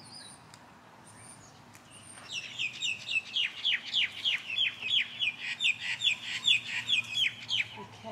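A bird calling in a quick run of short, repeated falling notes, about four a second, starting about two seconds in and lasting some five seconds.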